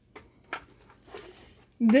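Clear plastic bag around a two-slice toaster crinkling faintly as the toaster is turned in the hands, with a few brief soft clicks.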